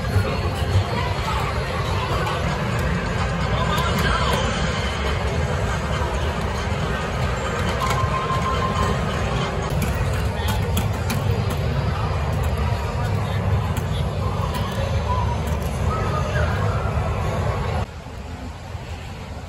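Arcade din: electronic game machines, background music and crowd babble blending into a loud, steady wash of noise. A run of sharp knocks comes about midway as a player hits the pads of an arcade game.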